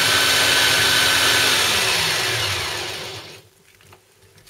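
Taurus electric food chopper running, its blades grinding Maria biscuits into crumbs with a steady whine. After about two seconds the motor is released and winds down, its pitch falling as it fades, and it stops about three and a half seconds in.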